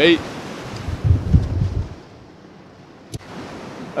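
Surf breaking on the shore under a steady wash of sea noise, with a gust of wind buffeting the microphone about a second in. There is a single sharp click near the end.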